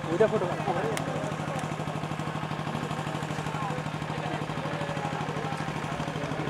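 An engine running steadily at idle, a low hum with a fast even pulse, under faint murmuring voices from the crowd.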